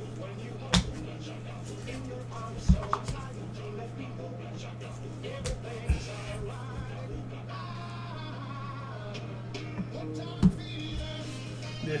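Quiet background music over a steady low hum, broken by about five sharp knocks at irregular intervals as trading cards are handled and set down on a tabletop.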